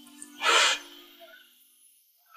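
A woman's single sobbing gasp, a short breathy burst about half a second in, over held background music notes that fade out within the first second.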